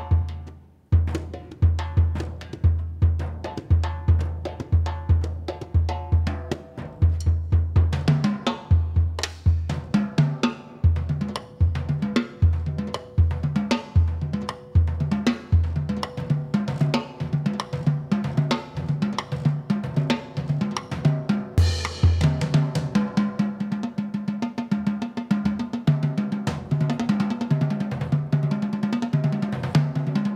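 Jazz drum kit played solo: a steady pulse of bass drum beats under dense snare and cymbal strokes. About two-thirds of the way in, the bass drum drops out and patterns on the toms take over.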